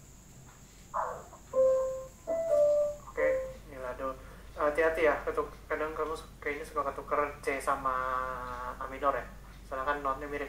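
Single piano notes played one after another, then a busier stretch of playing with a voice mixed in, heard through video-call audio.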